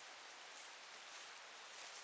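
Near silence: a faint, even hiss of background noise with no distinct sounds.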